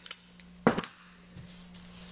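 Clear adhesive tape being pulled and torn off the roll by hand: a short sharp rip about two-thirds of a second in, with a few lighter clicks and crinkles of tape, over a faint steady low hum.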